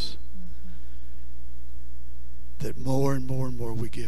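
Steady low electrical mains hum on the recording, with a man's voice briefly near the end.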